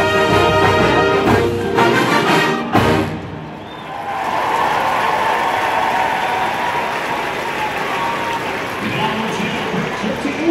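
Marching band brass and drums holding a loud chord that ends with a final accented hit about three seconds in, followed by stadium crowd cheering and applause.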